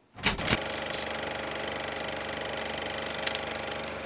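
Super 8 film projector running: a rapid, even mechanical clatter of the film transport that starts abruptly about a quarter second in and holds steady.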